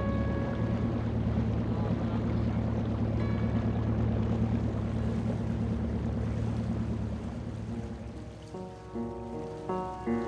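Boat engine running with a steady low drone over the rush of churned water from its wake. It fades away near the end as piano notes start playing a repeated figure.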